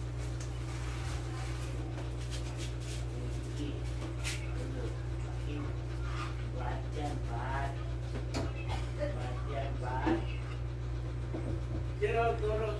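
Low background voices in the second half, with a few light metal clicks and scrapes from a long rod worked inside a motorcycle front fork tube, over a steady low hum.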